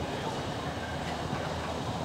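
Disney Skyliner gondola cableway running: a steady low rumble from the haul cable and cabins rolling past a lift tower.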